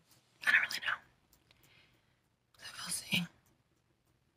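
A woman's voice: two short, quiet, half-whispered phrases, one about half a second in and another about three seconds in.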